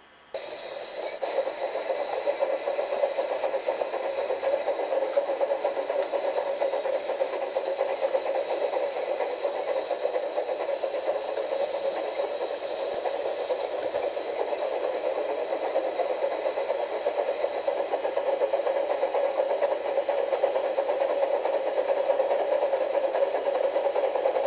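Model railway locomotive's small electric motor whirring steadily as it runs a train along the track, with a fast flutter of wheels and gears. It starts suddenly just after the beginning and grows slightly louder toward the end.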